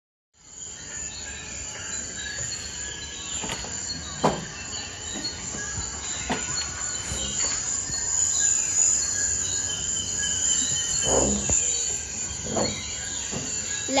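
Steady shrill of insects in a forest ambience, starting half a second in and growing gradually louder, with a few brief sharper sounds over it.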